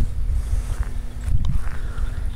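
Uneven low rumble of wind buffeting the camera's microphone, mixed with handling noise as the camera is moved, under a faint steady hum.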